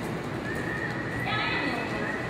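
Horse loping on soft arena dirt, its hoofbeats muffled, with a horse whinnying shortly before the end.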